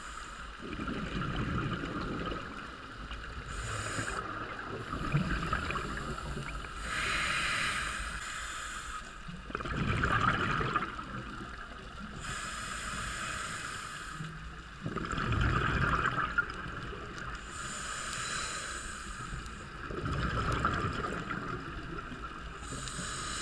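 Scuba regulator breathing heard underwater: a hiss on each inhale, then a louder rush of exhaled bubbles, about one breath every five seconds, five breaths in all.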